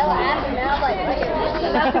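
Chatter of several people talking over one another.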